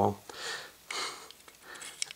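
Two soft breaths through the nose, each about half a second long, following the end of a spoken word.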